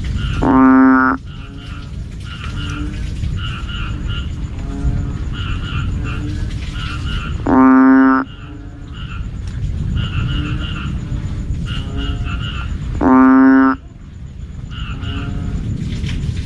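Banded bullfrog (Asian painted frog, Kaloula pulchra) calling three times, each a loud, low droning note about half a second long, spaced five to six seconds apart. Underneath, a continuous chorus of shorter, higher-pitched calls repeats in quick clusters.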